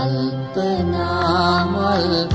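Sinhala popular song playing: instrumental backing with a held low bass note and a melody line that wavers in pitch in the second half.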